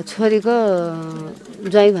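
A woman speaking: one long, drawn-out phrase falling in pitch, a short pause, then more speech near the end.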